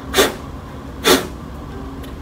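Two short, sharp puffs of breath blown through a single-piece stretchy fabric face mask, about a second apart, blowing out a lit match.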